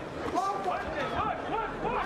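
Speech only: a man's voice talking, a little quieter than the commentary around it.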